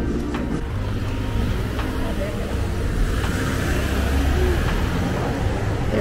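Road traffic: a car passing on the street, a low rumble building about a second in and easing off near the end.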